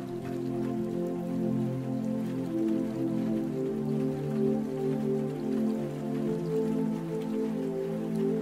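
Slow, calm new-age music of sustained chords that change every few seconds, over the steady patter of rain falling into shallow water.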